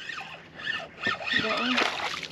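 Fishing reel being cranked as a hooked fish is reeled in to the boat, with people's voices over it.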